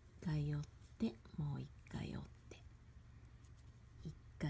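A person's voice in four short, quiet utterances in the first half, too brief or soft for any words to be caught, over a faint steady low hum.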